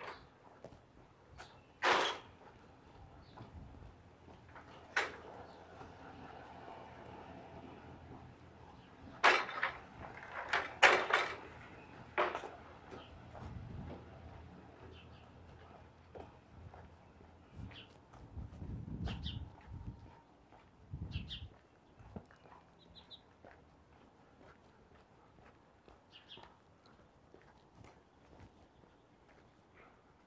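Quiet residential-street ambience with a handful of sharp, irregular knocks or bangs, the loudest cluster about nine to twelve seconds in. Faint high bird chirps come now and then, and a brief low rumble sounds later on.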